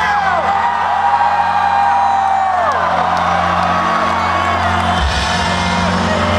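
Loud electronic mashup dance music over a concert sound system, with a long held vocal note that falls away about three seconds in and the bass coming back in strongly about five seconds in. A crowd whoops over the music.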